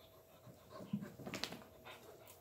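Airedale Terrier puppy making short vocal sounds while playing and scrambling after a ball, with a couple of sharp clicks near the end.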